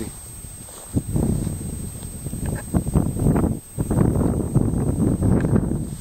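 Footsteps and tall grass and weeds rustling and brushing close to the microphone as someone walks through them. The sound is loud and irregular and starts with a sharp knock about a second in.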